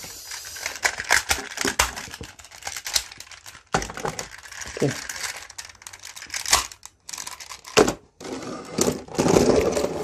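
Plastic parts of a DX Goseiger combining toy robot clicking and rattling as they are handled, folded and snapped together to form the robot's legs. Irregular sharp clicks with handling noise between them.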